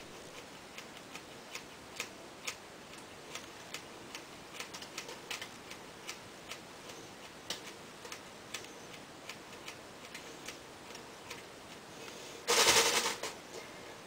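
Scissors snipping through hair in small cuts: faint, sharp blade clicks at an uneven two or three a second. Near the end a brief, louder rush of noise.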